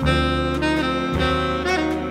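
Small-group jazz recording: saxophones and brass playing held notes together, changing about every half second, over double bass.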